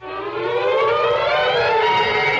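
A siren-like sustained tone, a stack of pitches, swells in abruptly and glides slowly upward, then levels off and holds: a radio-drama transition effect marking a scene change.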